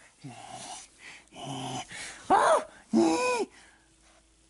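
Four short whiny vocal cries with no words: two lower, breathy ones in the first half, then two louder ones that rise and fall in pitch, the loudest about halfway through.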